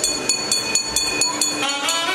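A metal bell rung rapidly, about six strokes a second, with a steady high ringing. Traditional temple music comes back in near the end.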